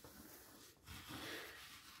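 Near silence, with a faint soft rustle of a hand moving over the brown paper covering a craft table. The rustle starts about a second in and lasts about a second.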